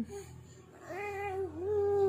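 Baby fussing: a drawn-out, wavering cry that starts about a second in and keeps going, after a short faint sound right at the start.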